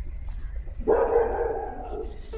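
A dog barking once, a single drawn-out bark that starts suddenly about a second in and lasts about a second.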